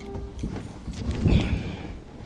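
A few irregular dull knocks and bumps, the loudest about a second and a half in, with a brief squeak over them: handling noise on a table of press microphones.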